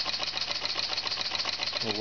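Large model steam engine running steadily at speed without its governor, making a rapid, even ticking rhythm as it drives a small generator. A man's voice starts right at the end.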